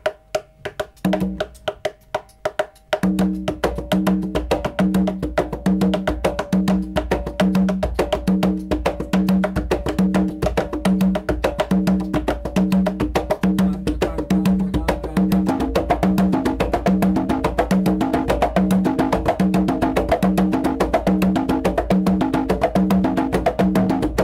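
Two conga drums played by hand in a rumba Columbia pattern: a few scattered strokes for about three seconds, then both drums join in a steady, repeating groove of low open tones and sharp slaps.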